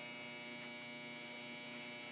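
A steady electrical hum or buzz at a fixed pitch, unchanging throughout.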